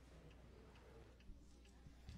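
Near silence: room tone with low hum and a few faint, scattered ticks.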